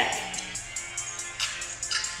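Instrumental hip hop beat playing in a pause between rapped lines, with quick, regular ticks over a steady low bass.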